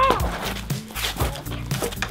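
Background music with a steady beat and bass line, with a short yelp right at the start.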